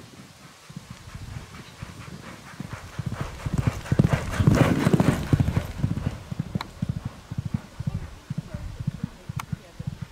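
Racehorse's hoofbeats as it canters up a soft sand gallop: a steady rhythm of dull thuds that grows louder, is loudest as the horse passes about four to five seconds in, then fades as it moves away.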